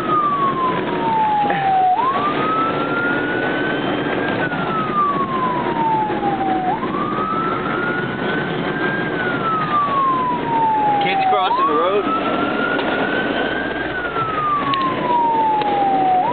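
Emergency vehicle siren on a slow wail. Each cycle jumps up quickly, climbs a little further, then falls slowly, repeating roughly every five seconds, three times over.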